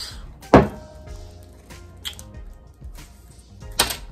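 A cologne bottle being handled: one sharp knock about half a second in and a second short, sharp sound near the end, over quiet background music.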